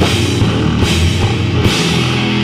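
Loud doom and sludge metal recording: heavy distorted guitars and a drum kit playing a dense, sustained riff.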